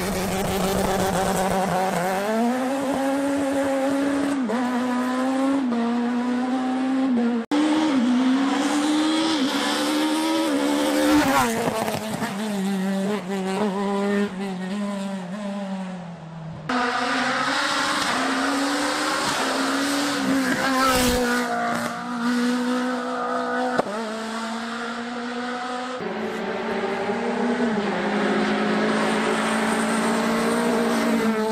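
Rally car engines revving hard on a tarmac stage: the engine note climbs and drops again and again as the cars accelerate and shift through the gears. The clip changes abruptly about a third of the way in, again a little past halfway, and once more near the end, each time to another run.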